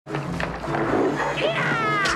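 Film sound effect of a shark roaring, a pitched cry falling in pitch near the end, over dramatic score music.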